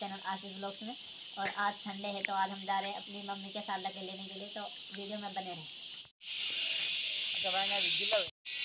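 A man talking, over a steady high hiss. After a cut about six seconds in, a louder, continuous high-pitched insect chorus in dense forest, with a few spoken words near the end.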